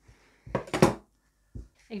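Scissors cutting through fleece fabric: a short snipping burst about half a second in, then a soft knock shortly before the end.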